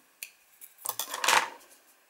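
Plastic bottle caps handled on a desk: a small click, then a short clatter about a second in.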